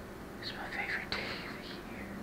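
A young man whispering a few words, with a steady low hum underneath.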